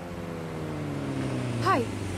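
A motorbike engine pulling up, its note falling steadily as it slows.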